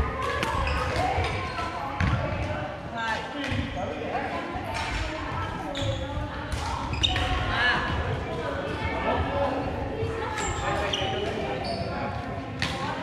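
Badminton play in a large, echoing gymnasium: sharp cracks of rackets hitting a shuttlecock, a second or more apart, with footfalls on the wooden court floor and voices in the hall.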